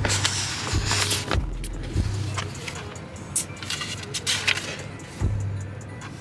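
Rustling and light knocks of a school folder and papers being handled, over a low hum that comes and goes.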